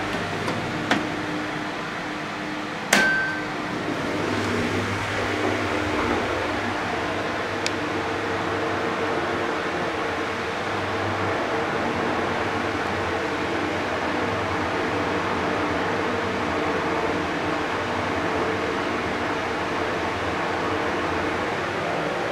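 Mitsubishi GRANDEE rope-traction passenger elevator: a few light clicks, a sharp knock about three seconds in, then the car running with a steady mechanical hum.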